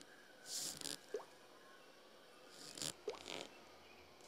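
Faint breaths and small wet mouth clicks from a person close to the microphone, in two brief clusters about half a second in and about three seconds in.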